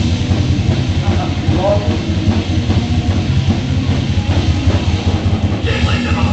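Loud live heavy metal band playing: distorted guitars over fast, driving drum-kit beats.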